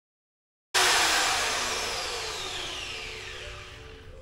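Handheld power grinder used to polish the end of a steel fork spring flat. It starts abruptly a little under a second in, then spins down, its whine falling in pitch as it fades over about three seconds.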